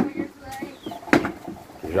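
Sharp knocks and light clatter from cassava being scraped by hand and dropped into a bucket, the loudest knock about a second in, with faint voices behind.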